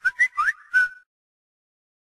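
Whistle sound effect in a logo sting: four or five quick whistled chirps, mostly sliding upward in pitch, all within about the first second.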